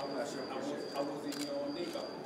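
Press photographers' camera shutters clicking several times, in small clusters around the middle and near the end, over low background talk.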